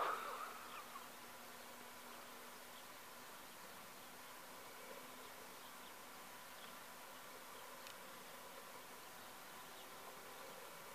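Faint, steady buzz of a distant radio-controlled Fox model glider's electric motor and propeller in flight.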